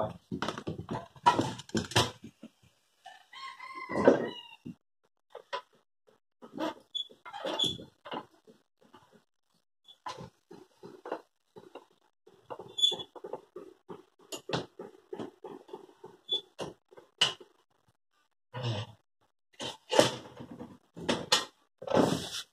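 Scattered irregular knocks and clatters with gaps between them, and a few short high-pitched animal calls, one of them falling in pitch about four seconds in. No power tool is running.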